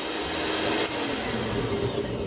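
Electric hand mixer running steadily, its twin wire beaters whipping egg-white meringue in a glass bowl as it nears stiff peaks.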